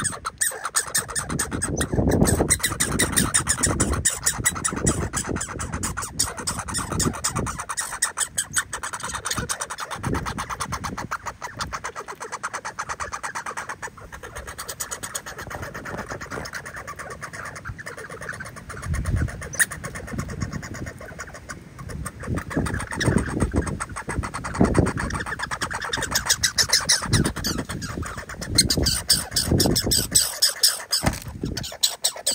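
Red squirrel close to the microphone at a seed feeder, making a fast, steady run of clicks and crackles.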